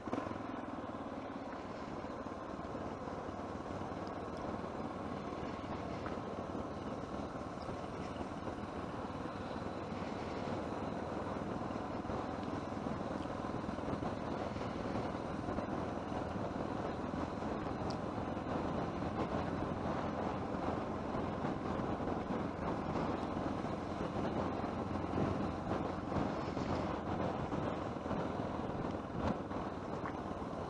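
Steady engine and road noise of a vehicle on the move, slowly growing a little louder through the stretch.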